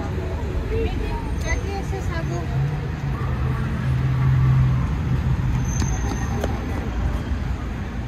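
Road traffic on a city street, with the steady rumble of passing cars and a vehicle's low engine drone swelling as it goes by, loudest about four seconds in.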